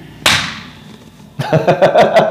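A man's short, sharp 'shh' hiss imitating the static of a radio being tuned, then laughter breaking out about one and a half seconds in.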